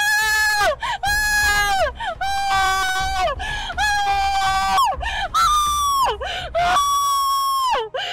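A woman screaming and wailing in pain: a string of long cries, each held for about a second and breaking off with a falling pitch, the last one pitched higher.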